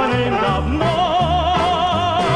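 1960s estrada song with band accompaniment: a held note with wide vibrato takes over about a second in, above a steady walking bass line.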